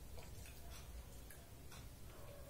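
Faint light clicks, a few a second and unevenly spaced, over a low steady hum.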